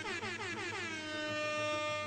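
A single long horn-like tone that slides down in pitch for about a second, then holds steady and stops at the end.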